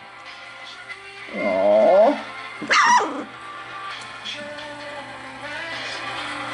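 A very young puppy, about three weeks old, whining: a drawn-out whine rising and falling in pitch about a second and a half in, then a short, higher yelp about a second later.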